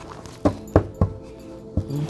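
A deck of tarot cards being handled and knocked against the table, about four sharp taps, over soft background music.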